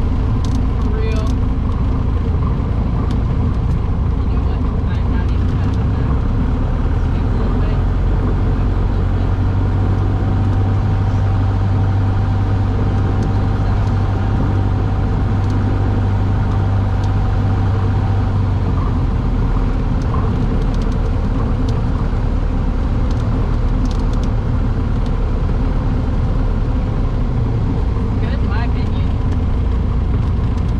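Piston engine and propeller of a small single-engine plane, heard from inside the cabin: a loud, steady drone. Its deep hum swells for several seconds about a third of the way in, then eases back.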